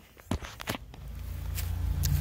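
Handling noise on a hand-held phone microphone: a few sharp knocks in the first second, then a low rumble that builds steadily as the phone is carried along.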